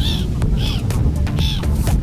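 Black-headed gulls calling: three harsh cries a little under a second apart as they swoop for bread.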